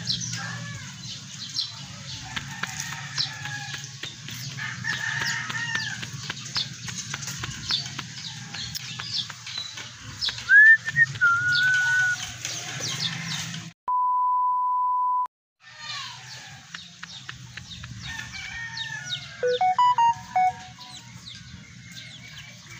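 Roosters crowing with other birds chirping over a low steady hum, and a single steady electronic beep of about a second and a half partway through.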